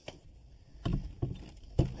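Old door jamb being pried loose from its opening with pry bars: a few knocks about a second in, then a sharp snap near the end as one side comes free.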